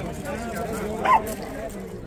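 Crowd chatter from many people nearby, with a single short dog bark or yip about a second in.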